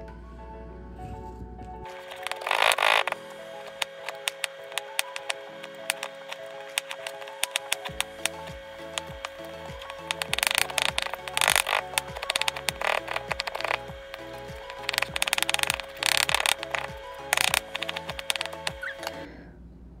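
A chef's knife slicing fresh ginger into thin strips on a plastic cutting board: quick, irregular taps of the blade on the board, several a second, with a few louder runs of strokes. Background music plays throughout.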